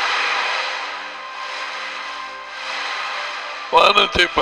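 Ocean surf washing onto a beach: a rushing hiss that swells and eases a few times, over soft sustained background music. A man's voice begins near the end.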